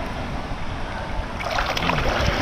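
Pool water lapping and sloshing close to the microphone, then splashing starts about one and a half seconds in as a swimmer pushes off into freestyle strokes.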